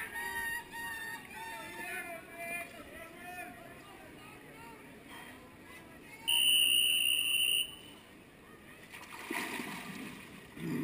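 Background voices and water lapping at the pool wall. About six seconds in comes one steady, high-pitched signal tone lasting about a second and a half, a starting signal from the pool deck telling the backstroke swimmers to take the grips and get ready.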